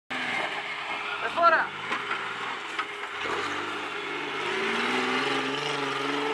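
Suzuki Samurai's swapped-in Mitsubishi 6G72 3.0 L V6 engine running under load as the 4x4 climbs a rocky rut. Its revs rise steadily from a little past the middle.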